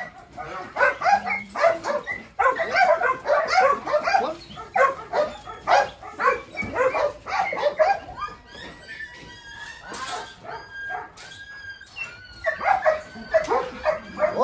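Belgian Malinois dog whining excitedly, with a run of short, high, thin whines in the second half, over people talking.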